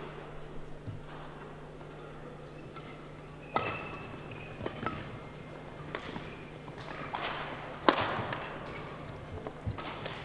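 Badminton rally: sharp racket strikes on the shuttlecock, the two loudest about three and a half and eight seconds in, with lighter hits and footwork on the court between them.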